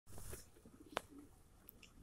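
Faint, low bird cooing in a quiet scene, with a sharp click about a second in.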